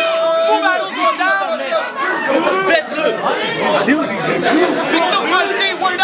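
Several men's voices talking over one another in a packed crowd: loud, continuous chatter with no one voice standing clear.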